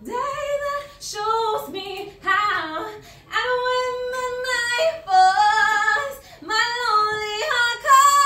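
A woman singing unaccompanied, solo, in long held notes with vibrato and short pauses between phrases.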